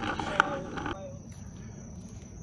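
Faint voices in the first second, then quiet outdoor background with a thin, steady high-pitched tone.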